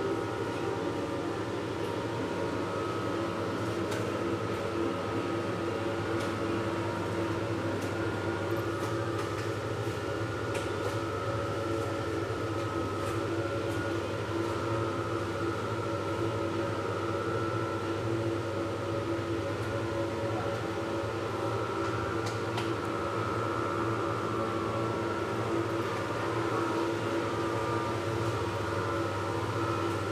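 Steady mechanical hum of refrigeration fans and compressors in a supermarket's walk-in cold room, holding several constant tones, with a few faint ticks of handling noise.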